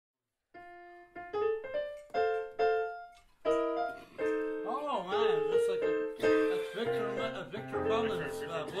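Vibraphone playing a phrase of struck notes that ring on, joined by electronic keyboard bass notes near the end. A voice speaks briefly over the playing midway.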